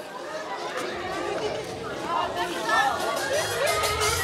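Party guests chattering, with dance music coming in about halfway through, its drum beat growing louder toward the end.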